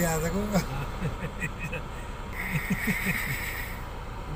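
People's voices, talking low and indistinct, inside a car over its steady low hum. A high buzzing sound comes in a little past halfway and lasts about a second and a half.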